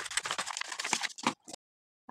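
Scissors cutting through a paper sewing pattern: a quick run of crisp snips and paper crackle, stopping abruptly about one and a half seconds in.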